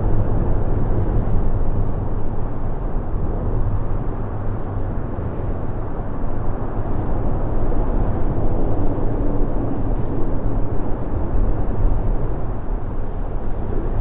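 Continuous low rumble of road traffic on the highway bridge overhead, steady with small swells in loudness and no single vehicle standing out.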